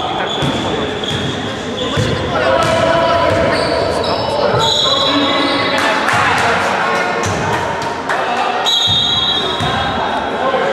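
Basketball bouncing on a wooden sports-hall floor during play, with players' voices echoing in the hall. Several shrill high tones are held for a second or so near the start, about halfway through and near the end.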